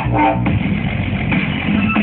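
Loud music with guitar and drums playing for a dance routine.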